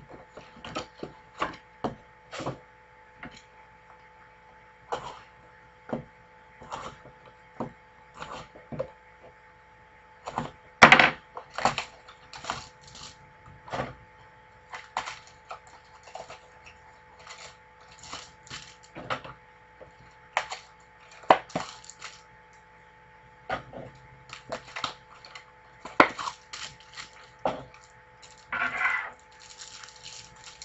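Hands handling a cardboard trading-card box, plastic-wrapped packs and cards on a tabletop: a run of light clicks, taps and knocks, with a louder cluster of knocks about eleven seconds in. Near the end comes a short crinkle of plastic pack wrapper.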